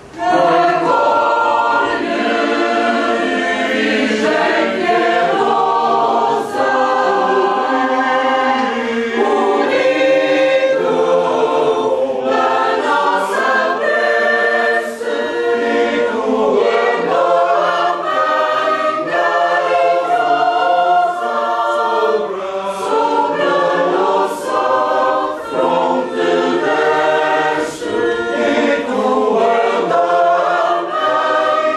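A choir singing, many voices together in sustained sung lines, coming in suddenly at the start and carrying on loud and steady.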